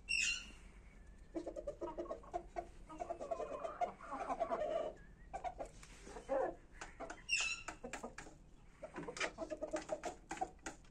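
Kashmiri desi chickens clucking in runs of short, quick clucks, with a short high, falling call just after the start and again a little past the middle.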